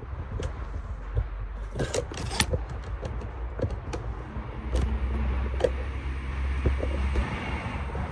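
A low steady rumble that swells from about five to seven seconds in, under scattered clicks and brief rustles of a person moving close past leafy shrubs.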